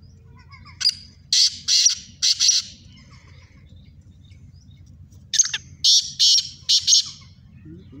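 Black francolin (kala teetar) calling: two loud, harsh, grating call phrases, one about a second in and another about five seconds in, each a short opening note followed by three rasping notes.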